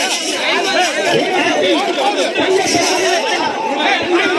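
Crowd chatter: many men talking loudly over one another at once, with no pause.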